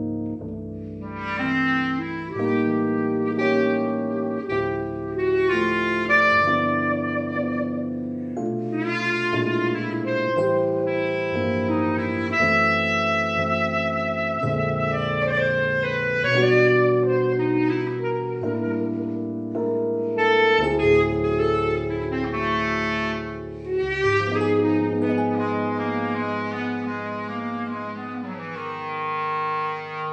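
Jazz duo: a reed instrument plays a melody with some long held notes over chords from a Roland RD-800 digital stage piano.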